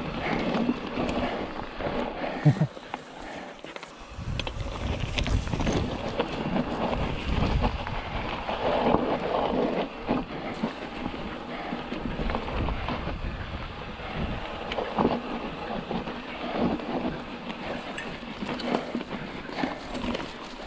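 Fezzari Wasatch Peak hardtail mountain bike rolling down a steep, loose rocky trail: a continuous rumble of tyres over gravel and rock with frequent rattles and clicks from the bike. It is a little quieter for about a second just before the four-second mark, then steady again.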